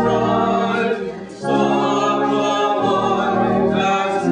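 Church congregation singing a hymn together, holding long notes, with a short break between lines about a second and a half in.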